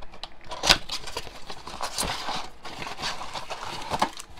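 Cardboard blaster box of trading cards being opened by hand: rustling and scraping of the cardboard flaps, with a sharp snap a little under a second in and another click at about two seconds.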